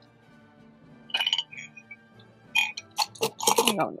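Fountain pens clinking against each other and against a cup as they are set down into it: a short clatter about a second in, then a quicker run of clicks and clinks near the end.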